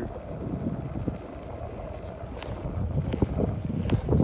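Wind noise on the microphone: a low, steady rush that gets louder near the end, with a few faint clicks.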